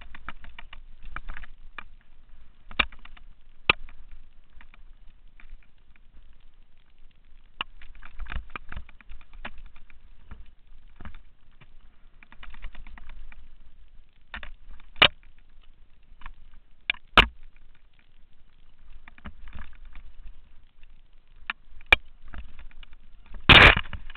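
Mountain bike rattling and clattering down a rough dirt singletrack: an irregular run of sharp clicks and knocks over a low rumble. A loud clattering hit comes near the end.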